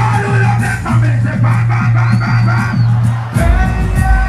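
Loud dancehall music over a live concert sound system: a heavy bass line pulses under the beat, and about three and a half seconds in the bass drops to a deeper line.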